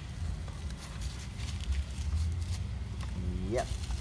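Steady low outdoor rumble with a few faint clicks, and a man's short spoken question near the end.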